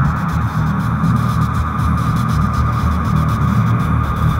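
Ambient drone made from sculpted static and noise: a steady, dense low hum with a band of hiss above it and a rapid fluttering crackle in the highs.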